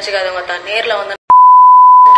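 A person's voice, cut off just over a second in, followed after a click by a loud, steady single-tone beep of the kind used to bleep out a word.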